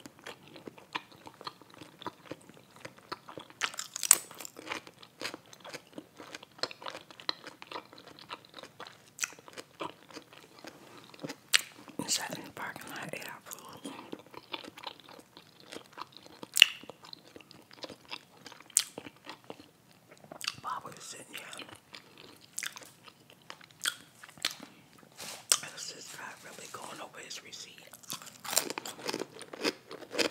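Close-miked eating: a grilled hot pepper cheese sub topped with potato chips being bitten and chewed, with many sharp crunches of the chips among softer wet mouth sounds.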